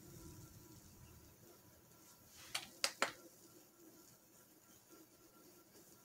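Faint room tone with three quick light clicks about two and a half to three seconds in, from a plastic UV nail lamp being handled over the resin cup.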